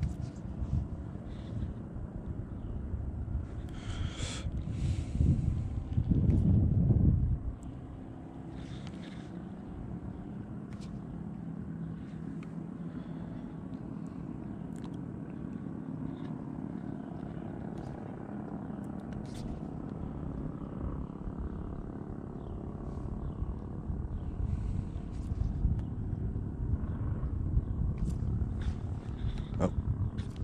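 Wind rumbling on the microphone, with two louder gusts, one about six seconds in and another building near the end. Scattered light clicks come from the baitcasting reel and rod as a jerkbait is worked.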